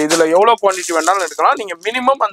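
A man talking over the crinkle and rattle of plastic-wrapped packs of stud-earring cards being handled and lifted.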